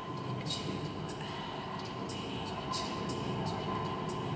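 Amplified vocal sounds made close into a handheld microphone: scattered short hissing consonant sounds, irregularly spaced, over a continuous low rumbling texture and a faint steady held tone.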